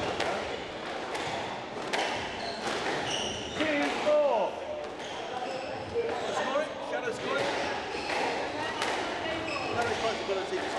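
Squash ball struck by rackets and hitting the court walls: sharp cracks spaced irregularly, several in the second half, with rubber-soled court shoes squeaking on the wooden floor around the middle.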